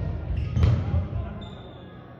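Players running on an indoor sports hall floor: footsteps thudding, loudest about half a second in, with voices calling, echoing in the large hall. A brief high squeak comes near the end.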